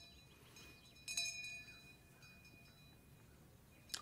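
Faint, high metallic chime strikes ringing out: one clear strike about a second in that rings on and fades, and a softer one a second later.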